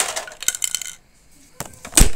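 Hard plastic pipe pieces clattering and rattling against each other and a hard floor for about a second, then a few clicks and a loud knock near the end as the camera is bumped.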